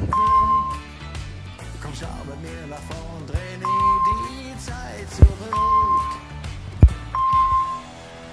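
Background pop music, over which a short, steady high beep sounds four times, each just after a sharp tap click: a spelling app's correct-answer tone as each answer is tapped.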